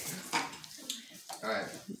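People laughing, then a short spoken word.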